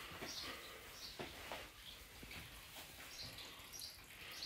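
Quiet indoor room tone with a few faint soft footfalls or handling knocks and several faint, short, high chirps.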